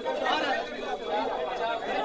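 A crowd of men's voices talking and calling over one another at once, the noise of protesters arguing with police.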